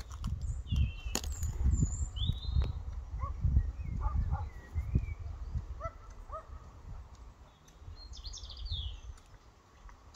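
Small songbirds singing short whistled and chirping phrases every second or two, over an irregular low rumble that is loudest in the first half and fades after about six seconds.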